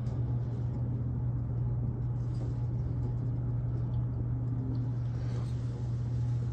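A steady low hum with no other distinct sound.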